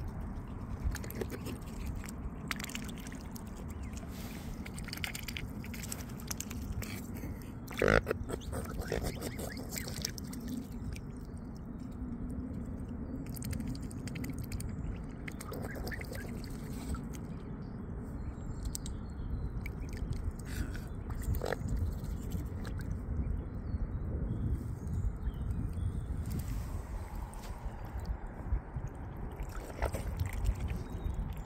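Swans and cygnets dabbling for food in shallow water, their bills splashing and slurping at the surface in a run of small wet clicks, with one sharp louder click about eight seconds in.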